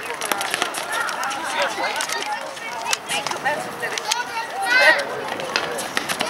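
Overlapping voices of players and spectators calling out around a futsal court, with a louder shout about five seconds in, and a few sharp knocks of the ball being kicked.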